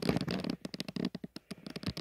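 Close-up handling noise from fingers: a rapid patter of small clicks and rustles, densest in the first half second, then scattered ticks.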